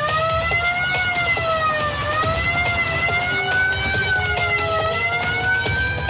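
Police car siren wailing, swinging slowly up and down in pitch about every two seconds, over a low rumble and a fast ticking pattern.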